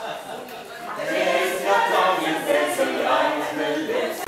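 A group of people singing together without instruments, several voices at once. The singing is softer at first and swells again about a second in.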